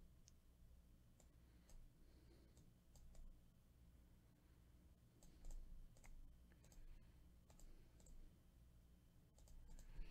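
Faint, irregular clicks of a computer mouse and keys over near silence and a low hum.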